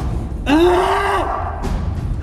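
A man's pained groan, one drawn-out moan that rises and then falls in pitch, about half a second in, over a steady low background rumble.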